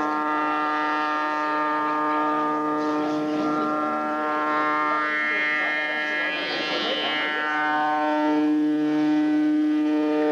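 Live rock band holding one droning note with a stack of overtones, with a brighter, higher swell rising and fading in the middle, as a song begins.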